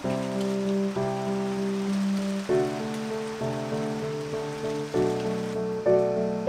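Steady rain falling, a fine even hiss of drops, heard under soft background music. The rain stops shortly before the end while the music carries on.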